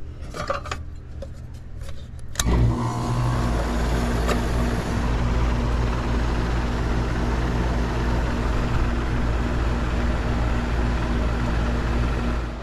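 A central air-conditioner condenser unit starting up about two and a half seconds in, after a few faint clicks. The compressor and condenser fan then run steadily with a hum, the unit back on after a new capacitor was mounted.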